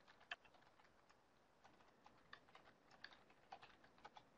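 Faint, irregular computer keyboard typing, scattered key clicks with short pauses.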